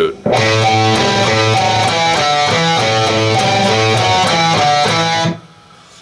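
Electric guitar playing a riff: the open A string sounds as the root under a repeating melody on the D string (open, fifth fret, open, then fourth, second, open, second). It starts just after the beginning and stops about half a second before the end.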